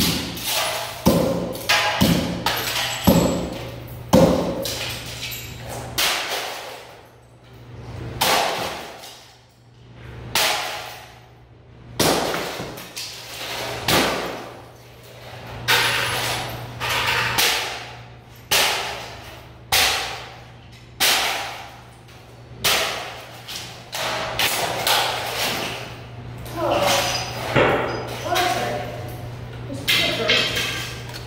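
Sledgehammer repeatedly smashing an object on a wooden stump: sharp blows one every second or two, each with a crunch of breaking material and a short ringing echo off the concrete walls.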